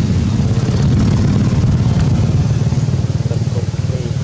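Loud, steady low rumble of an engine running.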